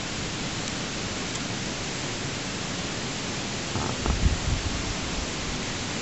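Steady hiss of background noise with no distinct event, and a brief low rumble about four seconds in.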